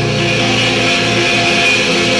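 Live blues-rock power trio of electric guitar, bass guitar and drums, with sustained notes held steadily.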